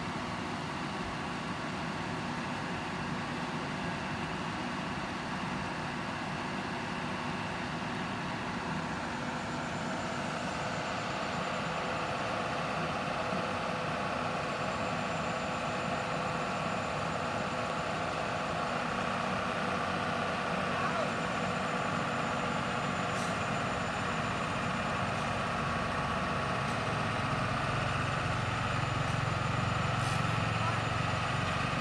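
Heavy construction machinery engines running steadily at idle. The sound grows gradually louder, with a deeper rumble over the last few seconds.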